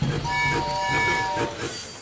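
Cartoon miniature steam locomotive's whistle: a chord of several steady tones held for just over a second as the little train comes along the track, with a low running rumble beneath.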